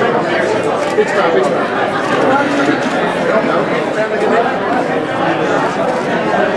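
Indistinct chatter of many overlapping voices, held at a steady level.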